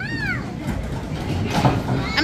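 A child's short, high-pitched squeal right at the start, rising then falling, over the steady low rumble of the bowling alley.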